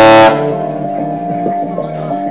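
Tenor saxophone holding a note that stops about a quarter of a second in. A quieter backing track of steady sustained chords plays on without the horn.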